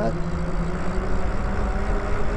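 Lyric Graffiti e-bike riding along a paved street: a steady low rumble of wind and tyre noise with a faint, even hum from the electric drive.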